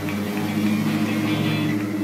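A band playing loud music with guitar chords held and ringing, in a passage without singing.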